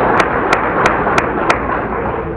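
Audience applauding, with one person's sharp hand claps close by at about three a second that stop about one and a half seconds in, as the applause fades.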